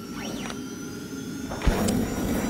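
Animated logo outro sound effect: a building whoosh with sweeping tones, then a low thump about three-quarters of the way through, topped by a bright shimmer.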